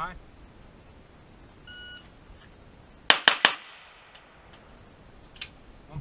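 An electronic shot timer gives one short beep, and about a second and a half later a pistol fires three shots in quick succession, under a fifth of a second apart. The last shot lands about 1.78 seconds after the start beep. A fainter sharp click follows a couple of seconds later.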